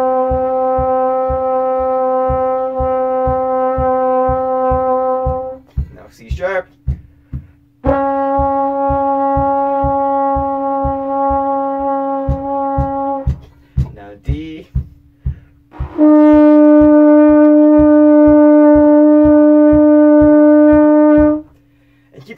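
Conn trombone playing long-tone warm-up notes: three held notes of about five and a half seconds each with short rests between, stepping up by half steps from C to C sharp and then higher again, the last one the loudest. A foot taps a steady beat under the notes, about two taps a second.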